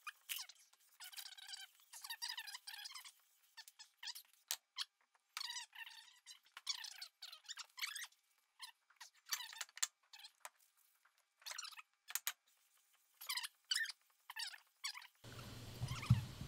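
Kurt D60 milling vise base being hand-lapped on sandpaper over a granite surface plate, to smooth and flatten it: faint, irregular rubbing strokes with thin squeals that waver in pitch.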